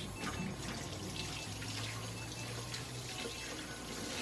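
Water running steadily from a tap into a sink.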